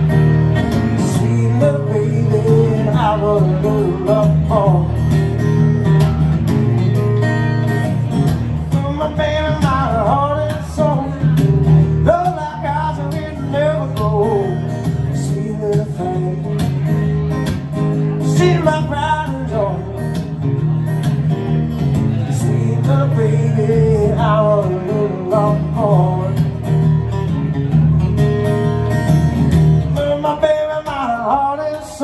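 A man singing a song live while playing an acoustic guitar.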